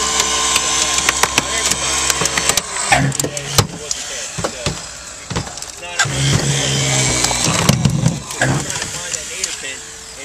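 A car door being forced off its latch pin, with many sharp cracks and snaps of metal and plastic over the steady hum of a motor. The motor's note changes about three seconds in and comes in heavier stretches later on.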